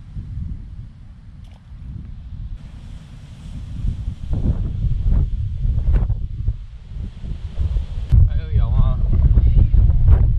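Wind buffeting the microphone in gusts, a low rumble that grows louder from about four seconds in.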